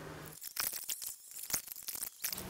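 Small hardware being handled: light, irregular clicks and ticks of screws and washers against a mounting plate, starting about half a second in.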